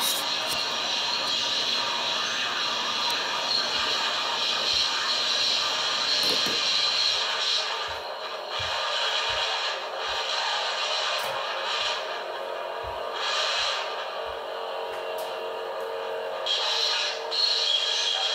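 A pair of 13-inch vintage Zanchi F&F Vibra paper-thin hi-hat cymbals being played, a continuous bright sizzling wash that swells and thins several times. Short soft low thumps sound underneath in the middle stretch.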